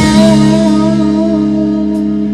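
Live rock band's electric guitars holding one sustained chord that rings out and slowly fades, with no drum beats under it.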